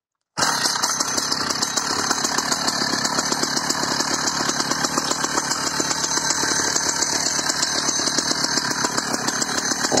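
Husqvarna 480CD two-stroke chainsaw running steadily without revving, its firing a fast even patter; it cuts in suddenly just under half a second in.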